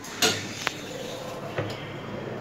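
Sigma passenger lift arriving at a floor and its sliding doors opening: a sharp clunk about a quarter second in, a second click shortly after, then the steady noise of the door mechanism running.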